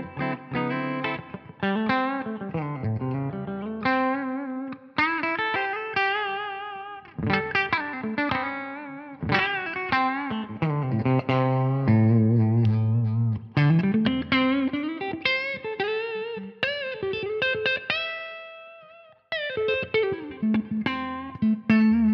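Ibanez AR220 electric guitar played through an amplifier on a cleaner tone, demonstrating its humbucker pickups. It plays melodic phrases of chords and single notes with vibrato and slides, with a short pause about nineteen seconds in.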